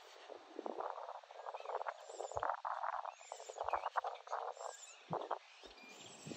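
Wooden cooking stick working a stiff mound of ugali in an aluminium pot, scraping and pressing the dough in uneven runs of short strokes with short gaps between them.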